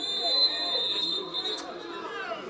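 Referee's whistle blown in one long, steady blast of about a second and a half, stopping play for a foul, over spectators' voices.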